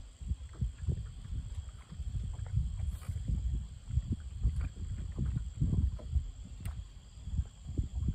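Wind buffeting the microphone in an uneven, gusting low rumble, over a faint steady high-pitched whine.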